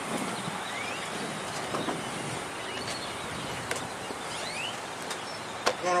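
Police SUV rolling past and coming to a stop, a steady noise of engine and tyres, with birds chirping in short rising calls about once a second. A short sharp knock comes just before a voice at the very end.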